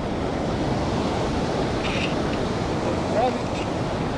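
Steady rush of shallow ocean surf washing around, mixed with wind buffeting the microphone.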